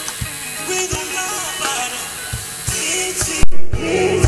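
Live band music playing through a concert sound system: a regular kick-drum beat under keyboard and guitar lines, with some singing. Near the end there is one brief, very loud low thump while the higher sounds cut out for a moment.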